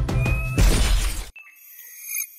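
Cinematic trailer music with a fast pulsing beat ends about half a second in on a loud crashing, glass-shatter-like hit that cuts off abruptly; faint high shimmering sparkle tones follow.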